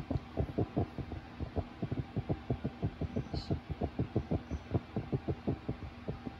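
Upright garment steamer running, its steam head sputtering in a rapid low pulsing of about seven beats a second.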